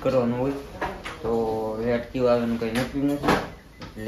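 A man talking, with one short sharp clack about three seconds in.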